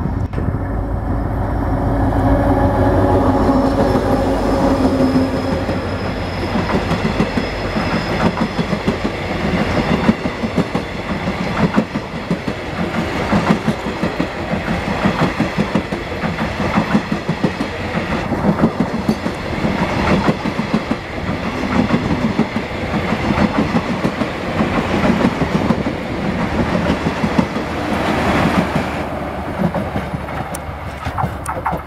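A GT26CU-2 diesel-electric locomotive hauling a long passenger train passes close by, its engine hum strongest in the first few seconds. The coaches follow, rolling past with a steady clickety-clack of wheels over rail joints that fades as the last coach draws away near the end.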